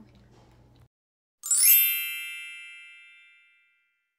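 A bright chime sound effect rings once about a second and a half in. It opens with a quick upward shimmer and fades away over about two seconds. Just before it, a faint low room hum cuts off suddenly.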